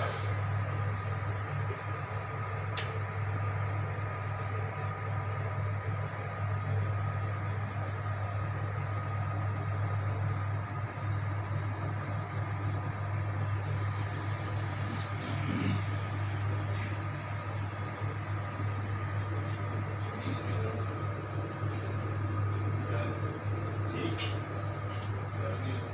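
Steady low machine hum with a thin, constant higher whine over it, the running noise of kitchen machinery such as a fan or refrigeration unit. There is one small click about three seconds in.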